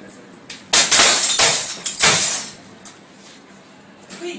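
Glass of a framed picture being smashed: a sudden loud crash just under a second in, then two more crashes of breaking glass, dying away over about two seconds.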